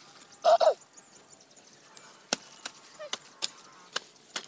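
Hand hoe chopping into dry soil: five sharp strikes in the second half, roughly two or three a second. Near the start, a short loud call falling in pitch is the loudest sound.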